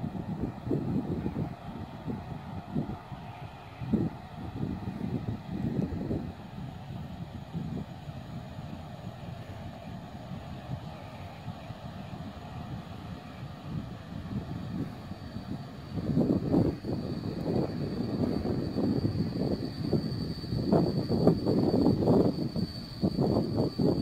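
PKP Class EP07 electric locomotive and its passenger train approaching along the line, a distant rumble that grows louder from about two-thirds of the way in, with a thin steady high whine joining shortly before. Uneven gusty low noise, typical of wind on the microphone, runs underneath.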